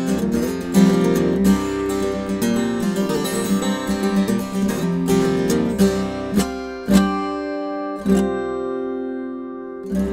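Mahogany-and-spruce 12-string acoustic guitar played fingerstyle: a run of quick picked notes and chords that slows near the end to a few single chords left to ring out.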